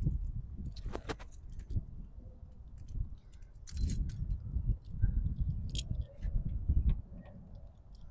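A bunch of keys jangling and clicking, with a brighter jingle about four seconds in, as a key is brought to the rear engine-lid lock of a VW bus. A low rumble runs underneath.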